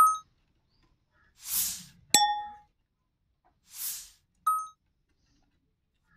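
Three short metallic dings about two seconds apart, each ringing briefly before dying away, with two soft hissing swells between them.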